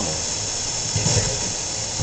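Spirit box sweeping through radio stations: a steady static hiss, with short choppy fragments of radio sound cut in around the middle.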